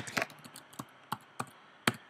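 Computer keyboard being typed on: about seven irregular key clicks, the loudest one near the end.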